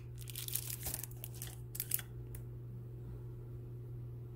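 Cosmetic packaging crinkling and rustling as it is handled, a quick run of crackles lasting about two seconds.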